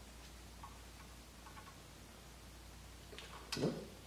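A few faint clicks and light handling noise as an alto saxophone's neck strap is adjusted by hand, with a short vocal 'huh?' near the end.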